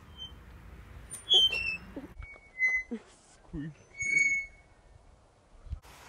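Playground swing squeaking at its chain hangers: a short, high squeak about every second and a half as it swings, along with a brief laugh.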